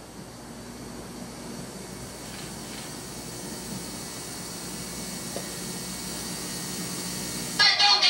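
Old film footage's soundtrack played through room speakers: a steady tape hiss with faint crowd noise beneath it, slowly growing louder, until loud voices break in near the end.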